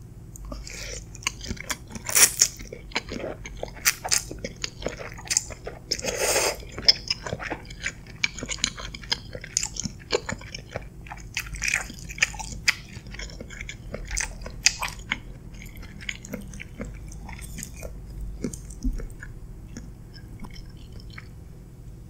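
Close-miked mouth sounds of eating creamy cheese-and-mushroom pasta: slurping in noodles and chewing them with many small, wet, irregular clicks. The sounds come thickly in the first half and thin out toward the end.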